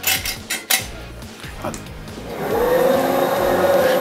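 Planetary dough mixer with a hook attachment starting up to mix dry flour, yeast and sugar: a few knocks in the first second, then a little over two seconds in the motor whine rises in pitch and settles into a steady run.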